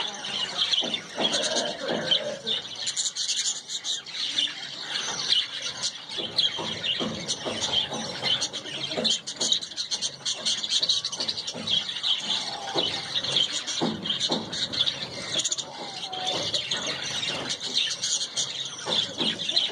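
Many small birds chirping and twittering continuously in a busy, high-pitched chatter, with lower squeaky calls and rustles now and then.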